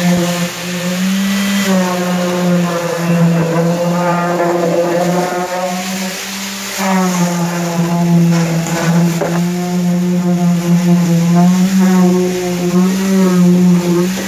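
Concrete vibrator running with its head pushed into freshly placed concrete to consolidate it: a steady hum with overtones, its pitch wavering and dipping briefly about halfway through.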